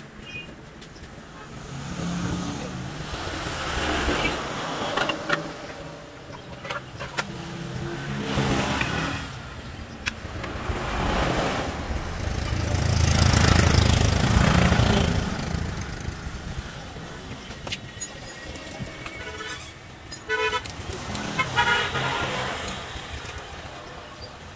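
Motor traffic passing close by in several rising and falling swells, the loudest about halfway through, with short horn toots near the end. Scattered sharp clicks of metal parts being handled.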